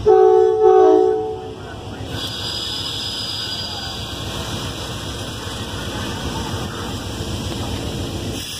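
A passenger train's horn sounds one short chord of about a second and a half as the train departs. Then comes the steady rolling noise of the train passing, with a faint high whine for a couple of seconds.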